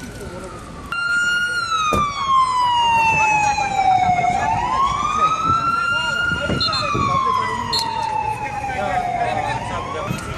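Emergency-vehicle siren in a slow wail, starting loud about a second in, its pitch sliding down over about three seconds and climbing back over about two, twice over.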